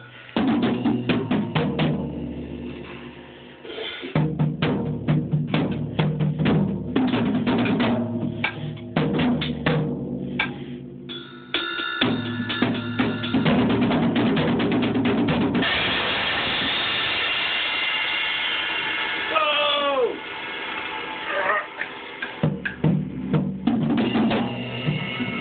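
An acoustic drum kit being played in loose, uneven hits on the snare, toms and bass drum, with cymbal crashes. For a few seconds in the second half a cymbal rings on in a continuous wash.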